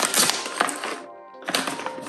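Plastic snack bag crinkling as it is torn open across the top, with a short pause about a second in. Background music plays underneath.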